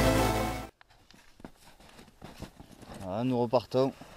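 Electronic background music that cuts off suddenly under a second in. It is followed by faint, irregular crunches and taps of footsteps and trekking poles on snow. A person's voice is heard briefly near the end.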